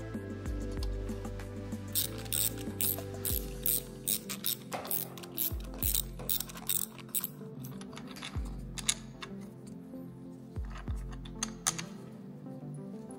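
Hand ratchet wrench clicking its pawl as it turns bolts out at the motorcycle's fork clamp. The clicks come in quick runs from about two seconds in until past the middle, with a few more near the end, over background music.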